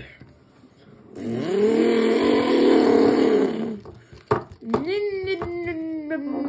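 A person's voice imitating a car engine: a raspy rev that climbs and holds for about three seconds, a couple of sharp clicks, then a second engine sound that rises and slowly drops away.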